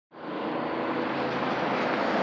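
Aircraft engine drone, fading in from silence in the first moments and then holding steady.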